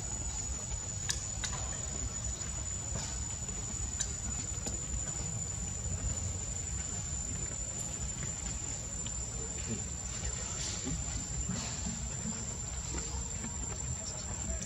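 A steady high-pitched insect drone, one unbroken tone, over a low rumbling background, with a few faint scattered clicks.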